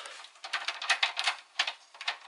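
Venetian blind being closed by twisting its tilt wand: a quick, irregular run of clicks and rattles from the tilt mechanism and the turning slats.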